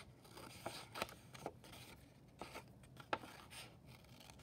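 Small scissors cutting paper: several faint, short snips at uneven intervals as the blades close slowly along a cutting line.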